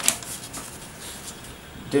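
A printed paper sheet rustling as it is unfolded and handled, with one sharp crackle at the start followed by softer rustling.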